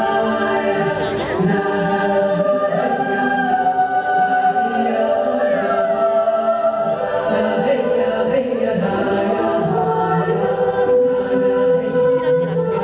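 Choral music from the castle projection show's soundtrack: a choir holding long, sustained chords.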